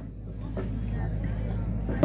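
Low steady hum that grows slightly louder, under faint background voices from the players and spectators around the court.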